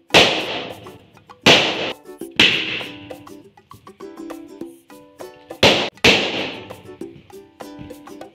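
Latex balloons popped one after another by jabs of a screwdriver tip: five sharp bangs, each with a short fading tail, the first right away, then about a second and a half and two and a half seconds in, and a close pair near six seconds. Bright background music plays underneath.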